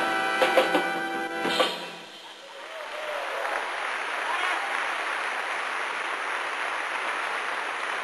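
A band's closing sustained chord with a few sharp hits, ending about a second and a half in. Then audience applause builds and holds steady.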